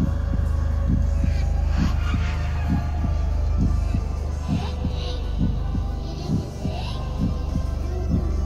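Haunted-house ambient soundtrack: a steady low hum with dull low thumps about twice a second, in uneven pairs like a heartbeat.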